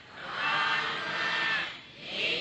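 A Buddhist monk chanting in a male voice: one long held phrase that starts just after the opening and fades out near the end.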